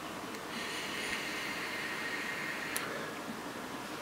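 Faint hiss of a long drag drawn through an e-cigarette's atomizer, with a light click near the end.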